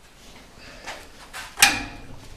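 A sharp metallic clank with a brief ring, like a steel pen railing being knocked, about a second and a half in, preceded by a couple of lighter knocks.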